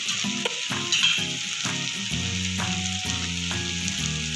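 Onion and tomato masala frying in oil in a kadai: a steady sizzle.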